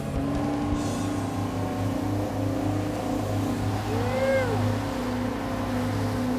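Outboard boat engines running steadily at speed, a constant drone with rushing water and wind noise. About four seconds in comes a brief rising-then-falling tone.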